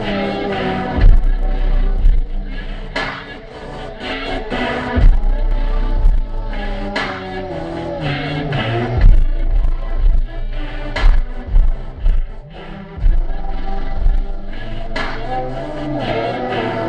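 Music with deep bass notes and a beat, a melody running over it.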